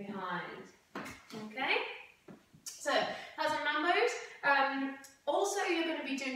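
A woman speaking, in short phrases across the whole stretch.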